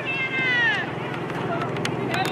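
A single high-pitched shout or call from a young female voice, falling in pitch and lasting under a second at the start, over a steady low hum.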